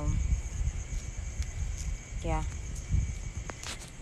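Night ambience: a steady high chirring of insects over low rumbling wind noise on the phone's microphone, with a few sharp handling clicks near the end as the phone is turned.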